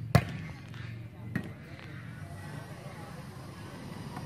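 A volleyball spiked hard: one sharp, loud slap of a hand on the ball right at the start, then a second, softer hit about a second later as the rally goes on.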